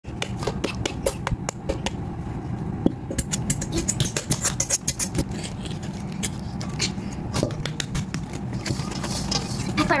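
Sticky slime with foam beads being worked in a glass bowl: a run of sharp clicks and crackling pops, over a steady low hum.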